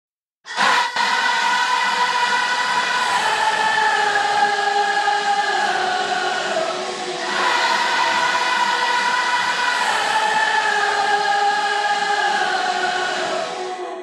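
Layered, choir-like wordless vocals from an AI-isolated vocal stem, in two long held phrases whose pitch slowly falls. The second phrase starts about halfway through.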